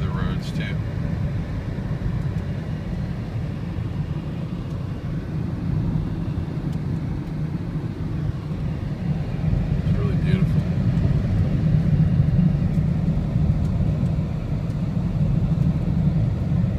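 Car interior road noise: a steady low rumble of tyres on wet pavement and the engine while driving a winding highway, swelling slightly partway through.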